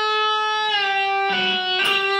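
Electric guitar played through a computer amp simulation: a bent note, G pushed up to A, held and then let back down about two-thirds of a second in. Two more picked notes follow near the end.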